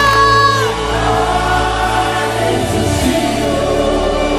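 Live gospel worship music: a held sung note that ends about a second in, over sustained chords and bass from the band.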